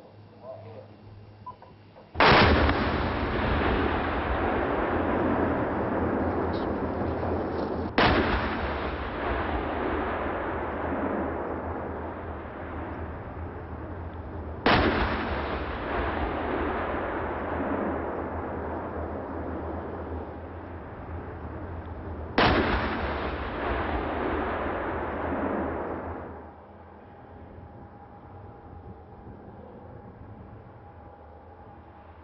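Four heavy explosive blasts, spaced about six to eight seconds apart. Each is a sudden crack followed by a long rolling rumble that slowly dies away. The last rumble fades out a few seconds before the end.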